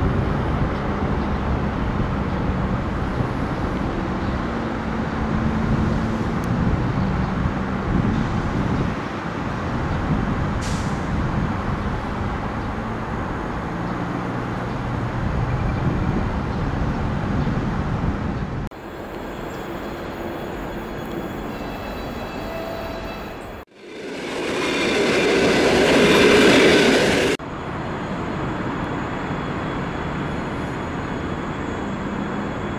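A train running past on the tracks: a heavy, steady rumble with a low hum. Near the end the sound cuts away, and another loud passing sound builds over about three seconds and stops suddenly.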